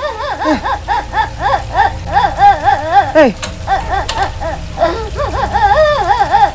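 A child crying in rhythmic sobbing wails, about four rising-and-falling cries a second. The crying breaks off a little after three seconds in and starts again near the end.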